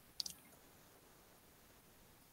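Near silence, broken by a single short, sharp click about a quarter second in.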